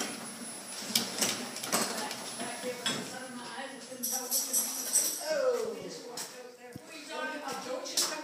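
Indistinct voices, with a few sharp clicks and light clattering knocks scattered through.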